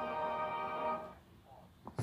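Television ident music heard from a TV set: one sustained chord of several steady notes, fading out about a second in.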